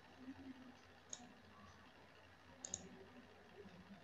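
Near silence: faint room tone with a few light clicks, one about a second in and a quick double click near three seconds in.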